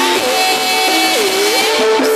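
Javanese gamelan music playing a ladrang: struck metal notes over a held melody line that dips in pitch and rises again partway through.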